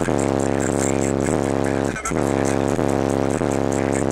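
Two custom 12-inch Sundown Audio ZV3 subwoofers, driven by a Sundown SAZ-2500 amplifier, playing a heavy held bass note, heard from inside the car. The note breaks briefly about halfway through and then sounds again.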